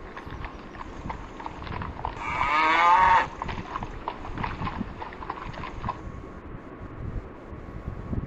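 Cartoon cow sound effect: one long, wavering moo about two seconds in, over a faint hissy background with scattered light clicks.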